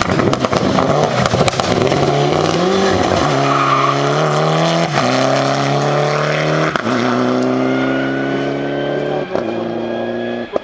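Mitsubishi Lancer Evolution IX rally car's turbocharged four-cylinder engine at full throttle. It passes close with a dense rush of engine and tyre noise, then accelerates away through three upshifts about three, five and seven seconds in, each a drop in engine pitch with a sharp pop. The sound fades slightly near the end.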